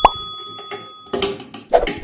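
Subscribe-button sound effect: a quick pop and a bell-like ding that rings for about a second. After that, canned corn kernels tumble with soft knocks into a plastic blender jar.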